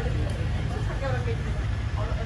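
Indistinct voices of nearby people chatting over a steady low street rumble.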